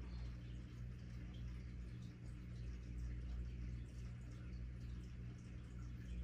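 Quiet room tone with a steady low hum and faint background hiss.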